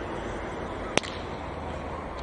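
A baseball bat hitting a pitched ball: one sharp crack about a second in, over steady background noise.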